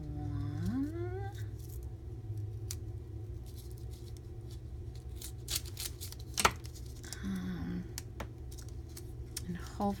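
Scissors trimming a chocolate bar wrapper: scattered small snips and one sharp click about six and a half seconds in, over a steady low hum.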